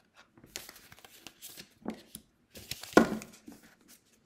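Oracle cards sliding and rustling against each other as a deck is fanned out and a card is drawn, with one sharp card snap about three seconds in.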